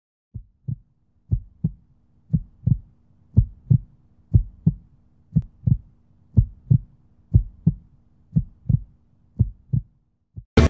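Heartbeat sound effect: pairs of deep low thumps, lub-dub, about once a second, ten beats in all, over a faint steady low hum.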